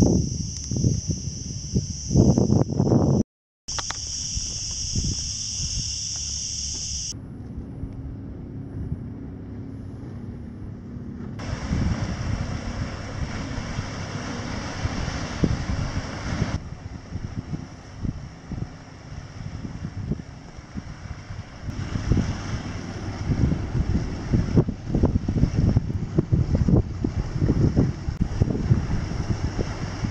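Wind buffeting the microphone outdoors, a gusty, uneven low rumble. A steady high-pitched hiss sits over it for the first several seconds, and the sound changes abruptly several times, with a brief dropout about three seconds in.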